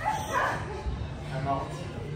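People's short, high yelping cries and laughter, two quick bursts in the first second.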